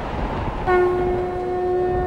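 Background score: a low rumble, then a single steady held note with strong overtones enters about two-thirds of a second in and sustains.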